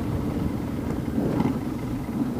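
A 2009 Yamaha Raider S cruiser's big V-twin engine running steadily as the bike is ridden, with road noise around it.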